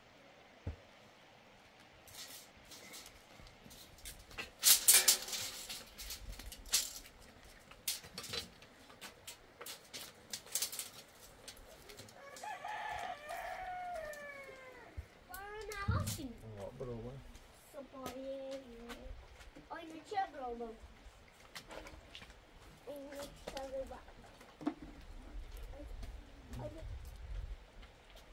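A rooster crows about halfway through, one long call falling in pitch, with shorter calls or clucks after it. Earlier comes a brief flurry of scraping and knocks, the loudest sound.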